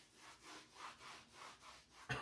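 Chalkboard being wiped clean with a hand-held eraser: faint, quick back-and-forth rubbing strokes, about three a second.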